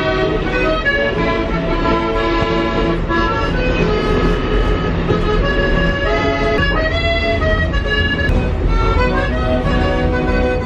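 Accordion playing a melody of held notes live inside a moving subway car, over the train's steady low rumble.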